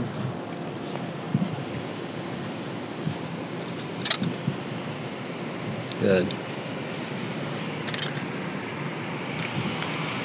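City street ambience: steady traffic noise with some wind. A sharp click comes about four seconds in, and a short voice sound about six seconds in.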